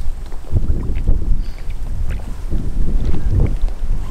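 Wind buffeting the microphone in uneven gusts, a heavy low rumble, with faint splashes as a hand holds a small pike in the water to release it.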